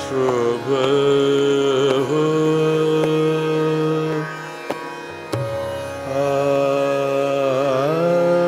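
Hindustani classical vocal in raga Shudh Kalyan at slow vilambit tempo: a male voice holds long notes with wavering, gliding ornaments. The voice pauses in the middle, where two sharp strokes sound, then takes up a long held note again.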